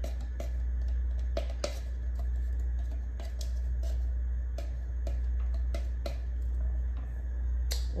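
Spatula scraping and tapping chopped garlic out of a glass bowl into a pot: a string of irregular sharp clicks and knocks, over a steady low hum.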